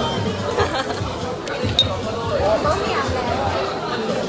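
Restaurant chatter: voices talking over background music, with one short, sharp clink a little under two seconds in.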